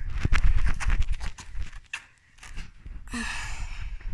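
Irregular knocks and a low rumble from a handheld phone camera being moved about, loudest in the first second or two, followed a little after three seconds by a short breathy sigh.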